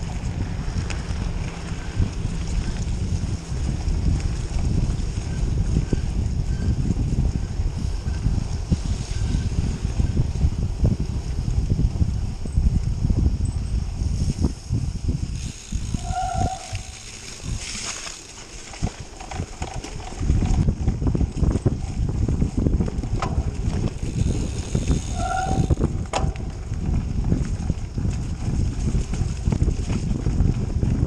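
Wind buffeting the action camera's microphone while a Canyon Grail gravel bike rolls along a leaf-strewn dirt track. The wind eases for a few seconds about halfway through, then picks up again. Two brief high-pitched tones, about nine seconds apart, sound over the wind.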